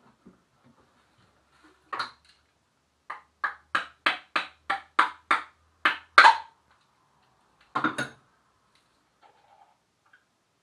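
A vacuum-sealed jar's lid being struck with a kitchen utensil to break the seal so it will open. A single knock comes first, then a quick run of about ten sharp taps at roughly three a second, and two more knocks later.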